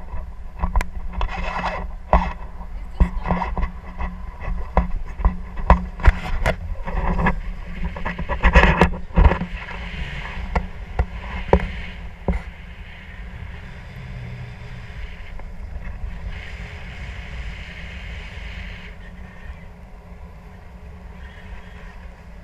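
Wind rushing over an action camera's microphone during a tandem paraglider flight: a steady low rumble with many knocks and bumps through the first dozen seconds, settling into a steadier, calmer rush.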